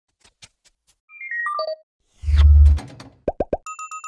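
Logo intro sound effects: a few faint clicks, a quick falling run of short tones, a loud low boom about halfway through, three quick rising plops, then a bright ringing ding at the end.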